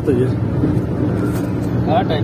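Steady low rumble of engine and road noise inside a car cruising at highway speed, with a voice heard briefly at the very start.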